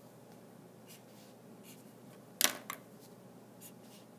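Highlighter markers handled on a desk: a sharp plastic click about two and a half seconds in, with two or three lighter clicks right after it, as one highlighter is swapped for another. Faint highlighter strokes on paper come and go around it.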